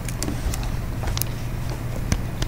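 Steady low electrical hum with a few light, sharp clicks of a stylus tapping and writing on a tablet screen, the clearest about half a second and just over a second in.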